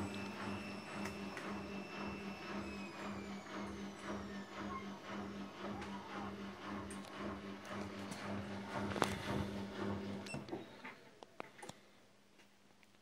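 Siemens WM16S790 Extraklasse front-loading washing machine on its spin cycle, running quietly: a steady low hum with a faint motor whine that falls in pitch as the drum slows. The sound dies away about ten and a half seconds in, followed by a few light clicks.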